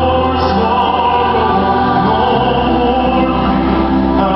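Church choir singing a worship song with band accompaniment: long held choral notes over a steady low bass note that changes about halfway through.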